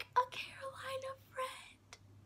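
A woman's soft, breathy voice: quiet laughter under her breath, with no clear words.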